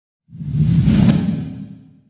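Whoosh sound effect with a deep rumble under it for a logo reveal, swelling to a peak about a second in and dying away near the end.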